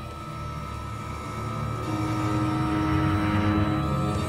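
Low droning underscore: held notes over a steady low rumble, swelling louder about two seconds in.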